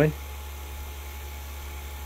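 Steady low hum of the Harvest Right freeze dryer's vacuum pump running, holding the chamber under vacuum during a leak test.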